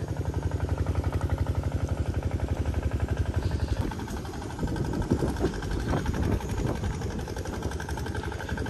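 A mid-sized engine running at a steady idle with a fast, even chug, louder for the first half and fading about four seconds in.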